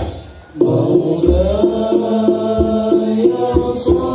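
Al-Banjari sholawat ensemble: a group of voices chanting together in long held notes over a steady rhythm of hand-struck frame drums (rebana) with deep bass-drum thumps. A drum stroke opens, the music dips for about half a second, then the chanting comes in.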